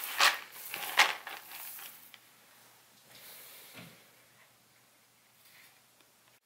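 A hand stirring a bin of damp, sprouted barley (green malt with rootlets): the kernels rustle in two loud sweeps in the first second or so, then fall to faint rustling.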